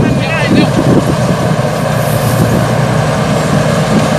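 Supakorn Hitech rice combine harvester running steadily in the field, its diesel engine giving a constant low drone.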